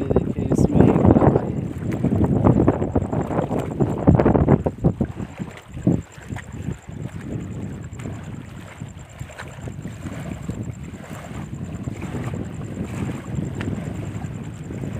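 Wind buffeting the microphone on an open reservoir shore: a heavy low rumble for the first five seconds or so, then steadier and quieter.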